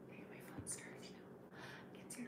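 A woman's faint whispering under her breath: a few soft, hissy syllables about half a second in and again near the end, over a low steady hum.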